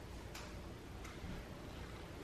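Two faint light clicks, one about a third of a second in and one about a second in, over quiet room tone: ceramic vases being set and adjusted on a wooden table.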